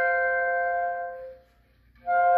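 Two clarinets playing a duet, holding a sustained two-note chord that dies away about a second and a half in, leaving a brief silence between phrases.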